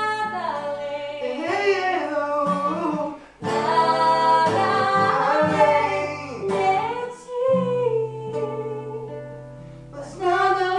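Acoustic guitar accompanying a man and a woman singing a worship song together. The voices come in strongly about three and a half seconds in, then hold one long note that fades away toward the end.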